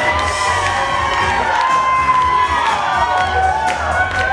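Crowd of wedding guests cheering and shouting together, with music playing underneath.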